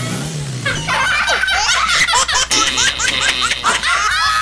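Several voices laughing hard and overlapping, with a steady low hum underneath.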